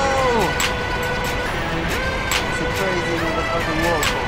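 Background music with a steady beat and held, gliding notes, over a constant rushing noise.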